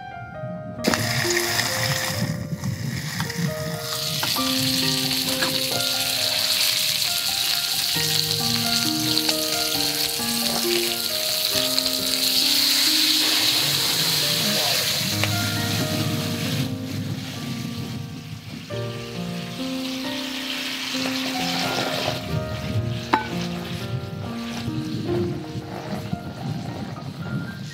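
Pork-wrapped skewers sizzling in a hot, oiled hinged sandwich pan over a camp stove. The frying hiss starts about a second in, eases off about two-thirds of the way through and picks up again, under background piano music.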